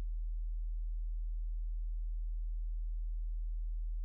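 A steady low hum: one deep, unchanging tone with nothing else over it.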